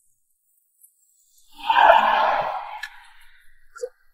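A single loud whoosh of noise that swells quickly about a second and a half in, then fades away over a second or so. A small click comes near the end.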